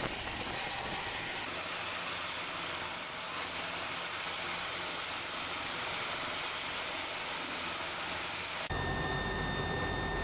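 Helicopter running, a steady, even rushing noise from its turbines and rotor. Near the end the sound cuts abruptly to a steady hum with thin, high whining tones, heard from inside the helicopter once airborne.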